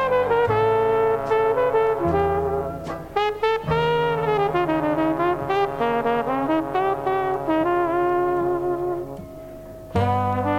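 Jazz recording of a slow brass melody, led by trumpet, over held low notes. The music thins out and falls quieter about nine seconds in.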